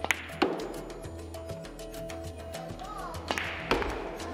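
Russian pyramid billiard balls clacking under a cue: sharp clicks of cue strikes and ball-on-ball collisions, a quick cluster at the start and two more near the end, over background music.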